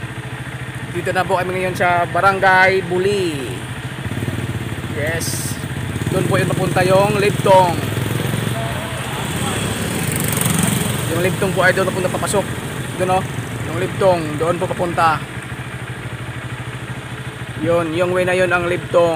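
Motorcycle engine idling steadily, with voices talking over it now and then.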